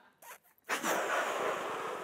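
A man blowing hard into a rubber balloon to inflate it: a long, loud rush of breath that starts just under a second in.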